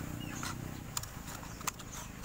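Scissors cutting a thin plastic water bottle: a few sharp snips and crackles of the plastic, spaced unevenly. A low drone underneath fades out about half a second in.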